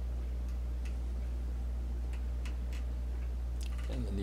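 Steady low hum with a scattering of faint, irregular clicks and ticks from hands working a steel needle and waxed flax thread through a pre-punched stitching hole in leather.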